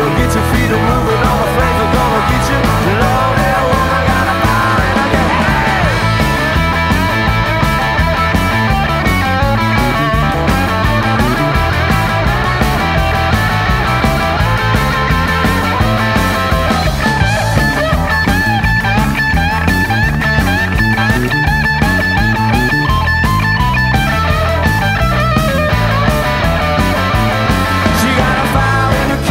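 Instrumental break in a blues-rock band recording: a lead guitar line over bass and drums keeping a steady beat, with no vocals.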